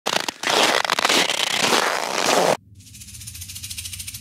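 Boots crunching through very cold snow, step after step with a crackly texture. It cuts off suddenly about two and a half seconds in, and a faint low hum swells up in its place.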